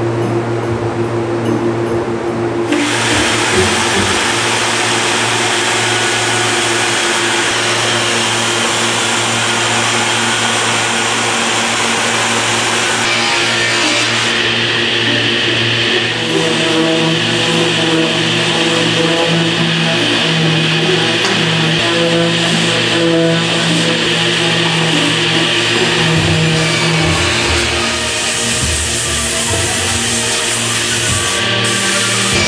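Background music over steady power-tool sanding noise from an angle grinder fitted with a sanding disc working a wood slab; the sanding noise starts about three seconds in.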